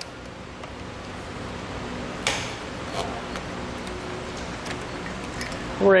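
Rubber straps of a hitch bike rack being unhooked and lifted away by hand. There is one sharp click a little over two seconds in, then a few lighter ticks, over a steady background hum.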